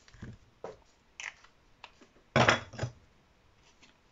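Small black cardstock pieces and a plastic glue bottle being handled on a desk mat: a few short taps and rustles, the loudest a brief rustle about two and a half seconds in.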